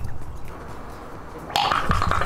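A glass bottle of calcium hypochlorite and DOT 3 brake fluid bursts into flame about one and a half seconds in. The flame jets from the bottle's neck and sputters in rapid pulses over a steady tone, like a small pulse engine.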